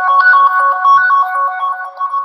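Phone ringtone: a quick melodic tune of short repeated notes, fading near the end. It marks an incoming automated Twilio voice call, the alarm notification set off by the IoT device, which calls again each time it is ignored.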